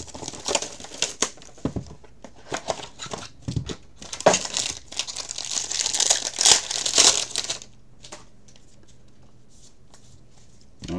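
Plastic wrapping on a baseball card box and pack being torn and crinkled open by hand, a run of crackling rustles that gets louder about halfway through and stops about three quarters of the way in.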